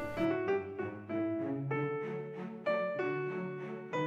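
Background music led by piano, single notes played one after another at a slow, even pace.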